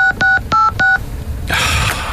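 Telephone keypad tone-dialling: four quick DTMF beeps in the first second as a number is keyed in, each beep two tones sounding together, with a breathy noise near the end.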